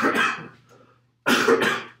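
A man coughing in two short bouts, about a second and a quarter apart.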